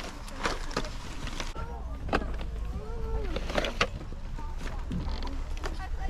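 Hard plastic action figures and toys clacking against each other and the plastic storage box as they are handled, a few sharp knocks, over faint distant chatter and a low rumble.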